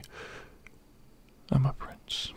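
A man's soft, close-up voice: a short breath at the start, a pause of about a second, then two quiet words.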